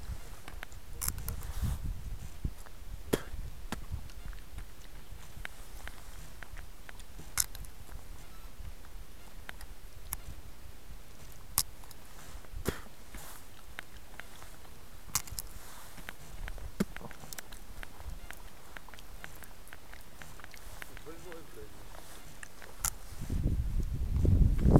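Quiet outdoor background with a steady low rumble and about ten scattered sharp clicks and ticks, spaced irregularly a second or more apart.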